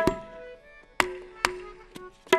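Indian hand drums in a sparse passage: a stroke at the start, then two more about a second and a second and a half in, each leaving a low pitched ring.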